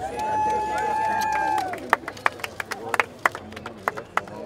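A long, high-pitched cheer from one voice for about a second and a half, then scattered hand clapping from a few people.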